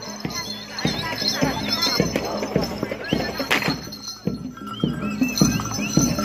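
Live bantengan troupe music: repeated drum strokes over steady ringing tones, with many voices calling and shouting over it.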